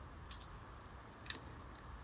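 Quiet room tone with a few faint, soft clicks about a third of a second in and again a little past one second.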